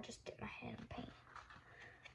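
Soft whispered speech, low and brief.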